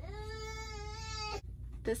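A young child's voice holding one long, steady, high note for about a second and a half, then stopping abruptly.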